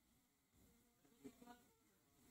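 Near silence: room tone, with a very faint, brief hum about halfway through.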